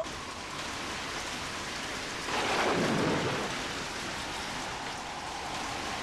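A steady hiss that swells louder for about a second some two and a half seconds in.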